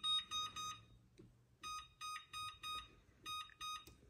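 Electric range oven control panel beeping as its touch keys are pressed to set the oven to 450°F. About a dozen short, same-pitched electronic beeps come in three quick runs with brief pauses between them.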